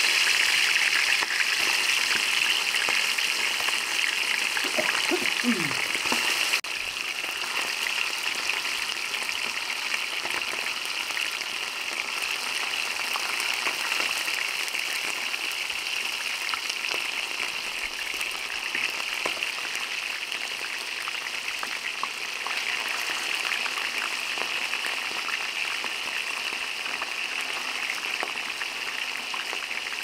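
Chicken pieces deep-frying in hot oil: a steady, dense sizzle and crackle of bubbling oil. It drops slightly in level about six and a half seconds in.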